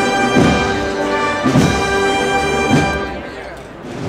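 Brass band playing a marcha procesional: sustained brass chords over a drum stroke about once a second. The music grows quieter near the end.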